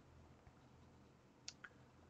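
Near silence with low room tone, broken by two faint, sharp clicks about a second and a half in, a fraction of a second apart.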